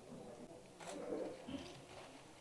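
Pigeon cooing faintly, with a light click just before the coo about a second in.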